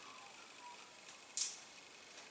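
A single sharp coin click about one and a half seconds in, with a brief high metallic ring: a coin set down on the table during the coin game.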